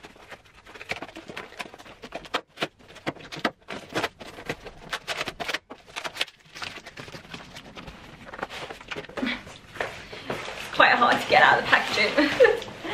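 A long cardboard shipping box being torn and pried open by hand, a dense run of irregular snaps, rips and rustles of cardboard and packaging. A woman's voice comes in near the end.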